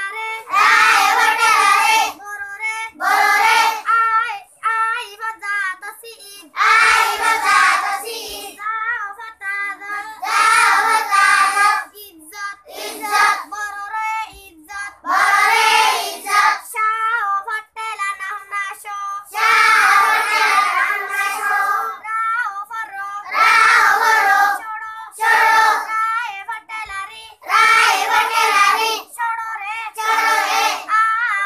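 A group of children chanting a lesson together in unison, in loud phrases of one to two seconds with short, quieter breaks between them.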